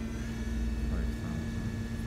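Mori Seiki MV-40B vertical machining center spindle running with no cut at about 4,500 RPM, a steady hum. A higher whine comes in shortly after the start as the speed is stepped up toward 5,000 RPM.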